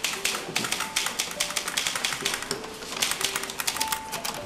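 Typewriter being typed on quickly, a dense run of sharp key strikes, with a few soft held music notes underneath.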